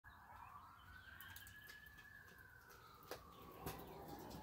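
Near silence, with a faint long tone that rises slowly and then sinks, and two faint clicks in the last second.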